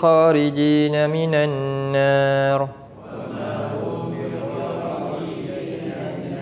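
A man reciting a Quranic verse in Arabic in a melodic chant, with long held, wavering notes; the recitation stops about three seconds in and a softer, indistinct murmur follows.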